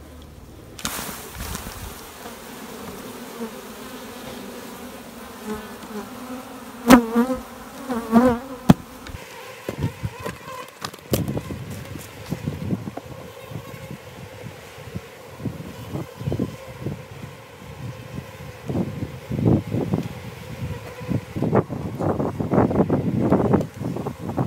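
Honey bees buzzing around an open hive: a steady hum, with single bees wavering close past the microphone now and then. Sharp knocks come about seven and nine seconds in, and short handling noises follow through the second half.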